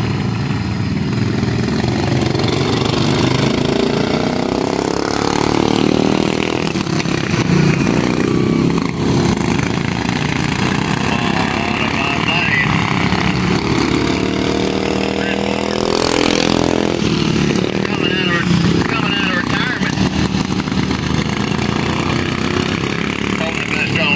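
A pack of modified flathead racing kart engines running at race speed. Their pitch repeatedly rises and falls as the karts go through the turns and pass by.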